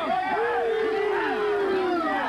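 Crowd of spectators shouting and cheering encouragement at a strongman's rope-hauling effort, with one man's long sustained yell, slowly falling in pitch, over the many voices.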